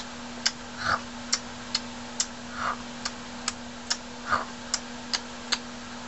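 Galah's beak making a run of sharp clicks, about two a second, as it nibbles, with a throat being cleared about a second in.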